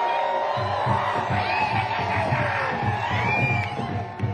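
Live funk band playing with the crowd cheering and whooping. A low, repeating bass pulse comes in about half a second in.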